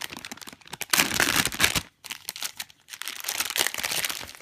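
Metallized foil bag crinkling as it is handled and pulled open, in noisy bursts: a loud stretch about a second in, a brief pause, then more crinkling near the end.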